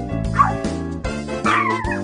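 Upbeat background music with a dog yipping twice over it: a short yip about half a second in and a longer one, falling in pitch, about a second and a half in.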